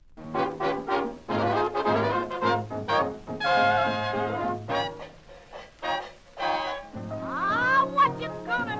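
An early jazz band recording of the late 1920s to early 1930s starts playing from vinyl, brass horns carrying the tune in short notes, then a held wavering note, then sliding notes near the end.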